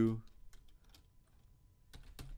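Faint, scattered computer keyboard keystrokes from typing code, picking up again near the end, after a voice finishes a word at the very start.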